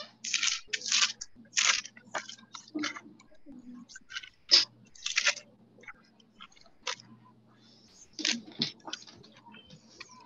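Irregular short bursts of hissy scratching and rustling noise over a faint steady electrical hum.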